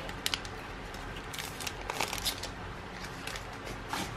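Cards being drawn out of an opened foil trading-card booster wrapper: light crinkling of the foil and the soft slide of the card stack, heard as scattered small ticks and rustles over a faint steady hum.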